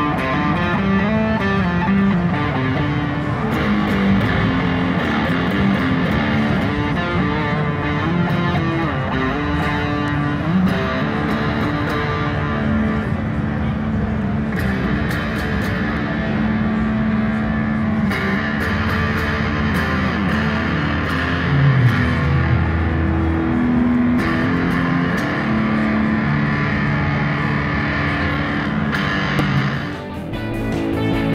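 Electric guitar playing a melodic line of long held notes with slides and bends in pitch.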